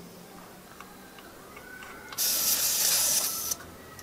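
A sharp hiss of air escaping from a car tyre's valve stem for just over a second, starting about two seconds in, as a cap-type TPMS sensor is screwed down onto the valve and presses open the valve core until it seals.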